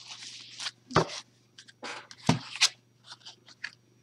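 Paper oracle cards rustling and sliding against each other as one card is drawn from a fanned deck and laid down, with a few sharp snaps and taps about a second in and again past the middle.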